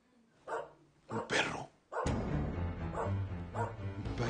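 A puppy yipping a few times in the first two seconds, short high cries, then dramatic background music with steady low notes comes in about halfway through.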